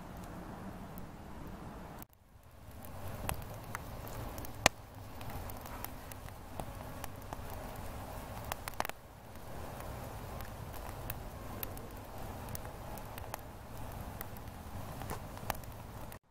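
Wood campfire of logs and sticks burning, with scattered crackles and sharp pops over a steady background noise. The sound drops out briefly about two seconds in.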